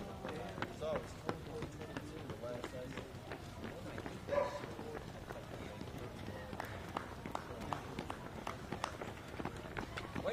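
Footfalls of a stream of runners' shoes on an asphalt road, a continuous uneven patter of many steps overlapping as the runners pass.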